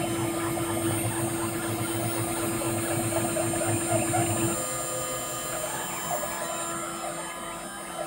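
CNC milling machine spindle running while an end mill cuts an aluminium mold block, a steady whine over rough cutting noise. About four and a half seconds in, the held tone stops and the sound changes and grows quieter.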